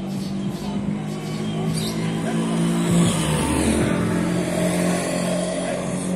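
A car's engine running close by on the street, growing louder toward the middle as it passes.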